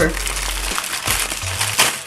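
Plastic bubble mailer crinkling as it is handled and opened, with sharp crackles about one second in and again near the end.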